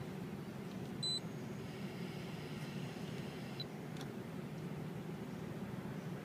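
A single short electronic beep from the car stereo head unit as a button is pressed, about a second in, followed by a couple of faint clicks. Under it runs the steady low hum of the idling vehicle, heard inside the cabin.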